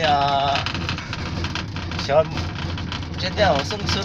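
Voices speaking in short phrases over a steady low hum.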